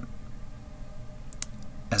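Quiet room tone with a steady low hum and two or three small, sharp clicks about a second and a half in; a man's voice starts just before the end.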